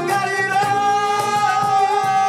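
Live male vocal singing one long held note into a microphone, with a strummed acoustic guitar underneath.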